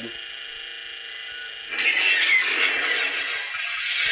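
Proffieboard lightsaber's soundfont hum playing through its small bass speaker, then about two seconds in a dense, hissing saber effect of about two and a half seconds, after which the hum stops: the blade powering down.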